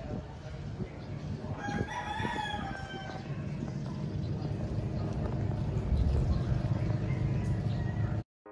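A rooster crows once: a single long, pitched call lasting about a second and a half, starting near two seconds in. It sounds over a steady low rumble of outdoor background noise.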